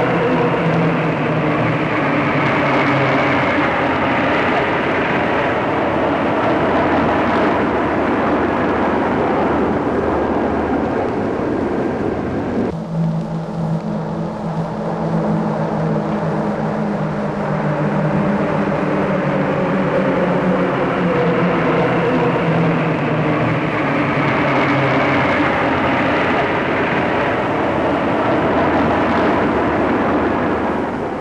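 Jet engines of a formation of de Havilland Vampire and Gloster Meteor fighters flying over: a continuous loud rush with whining tones that rise and fall in pitch as the aircraft pass. The sound changes abruptly about 13 seconds in.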